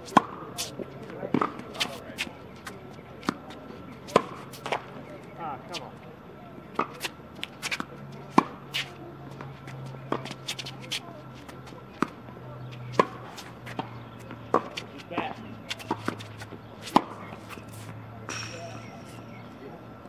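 Tennis rally on a hard court: sharp pops of racket strings striking the ball and the ball bouncing, about one every second or so, some loud and close and others fainter from the far end. A short hiss comes near the end.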